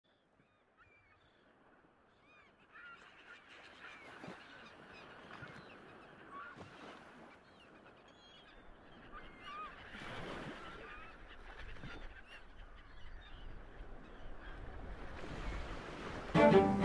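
Seabirds calling: many short, repeated calls, starting about two and a half seconds in and growing slowly louder, over a soft noisy wash of surf that swells a few times.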